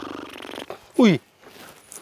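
A man snoring with a fast rattling flutter while lying on a mattress. The snore breaks off less than a second in, and about a second in he gives a short falling cry, 'ohi!'.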